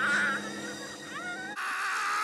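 Shrill, wailing martial-arts battle cries in Bruce Lee's style. A held high yell is followed by a short rising cry about a second in. After an abrupt cut, another long shrill cry is held.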